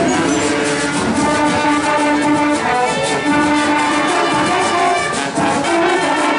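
Marching band playing, with brass horns carrying a sustained melody over a steady drum beat.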